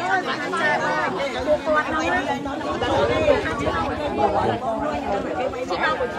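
Several people talking over one another, a babble of overlapping voices.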